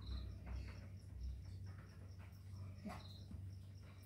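A cricket chirping in a fast, even rhythm, about four chirps a second, over a steady low hum from the aquarium pump.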